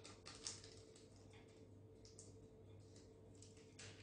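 Near silence, with a few faint light ticks and rustles of parchment paper being handled.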